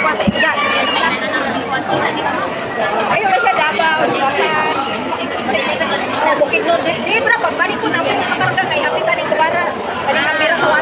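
Casual chatter of several people talking over one another, with no pause. A brief knock comes just after the start.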